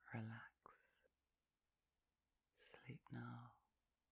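Only a quiet spoken voice: two short phrases, one at the start and one about three seconds in, with near silence between.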